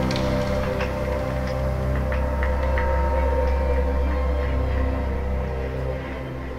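Live contemporary ensemble music for strings, percussion and electronics: a deep sustained drone under steady held string tones, with sparse short taps scattered through it.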